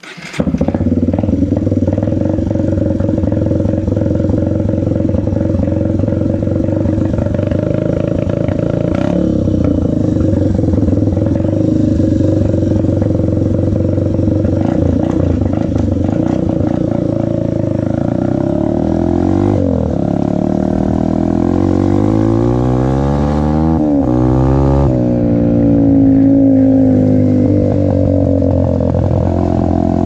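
Small dirt bike engine running close under the rider, steady at low speed at first, then from about two-thirds of the way in its pitch drops and climbs several times as the throttle is opened and closed.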